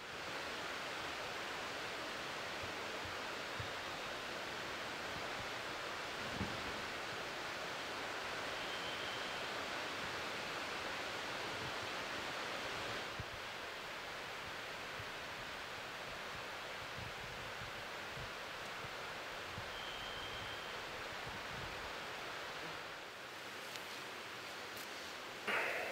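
Steady, even hiss of forest ambience at night, with two faint, brief high chirps, one about nine seconds in and one near twenty seconds.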